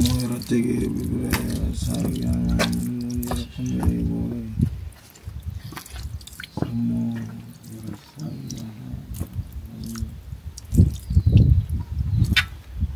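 A man chanting in two long phrases held on a steady pitch, a prayer accompanying a ritual offering of water to the ancestors, with water dripping and splashing.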